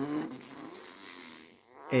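Baby blowing a raspberry, lips buzzing for about a second and a half.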